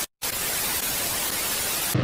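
Steady white-noise static hiss, dropping out to silence for a moment just after it begins and cutting off suddenly at the end.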